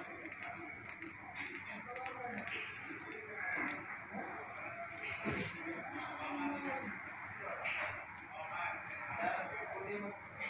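Indistinct voices talking in the background, too unclear to make out words, with a few light clicks and knocks, one about halfway through.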